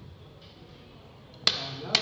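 Two sharp clicks about half a second apart near the end, the loudest sounds here, after a stretch of quiet room tone.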